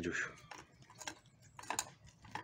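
A dog eating wet meat from a steel bowl: irregular soft clicks and smacks of chewing and licking, with one sharper click a little before the end.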